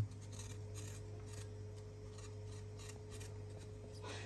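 Kitchen knife cutting and scraping raw chicken held in the hand, a run of faint short scrapes, over a steady low hum.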